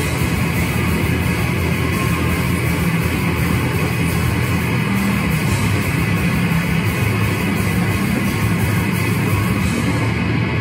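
A heavy rock band playing live and loud, with distorted electric guitars and a drum kit, heard from the audience as one steady, dense wall of sound.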